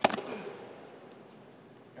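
Wrestlers' bodies hitting the wrestling mat as they roll, one sharp thud right at the start, dying away into low background noise.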